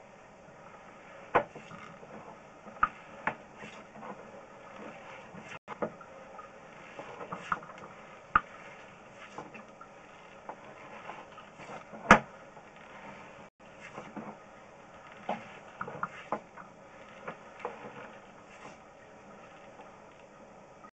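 Scattered light clicks and knocks over a faint steady hiss, the loudest a single sharp knock about twelve seconds in: handling noise from a sewer inspection camera's push cable being fed down a cast iron waste line.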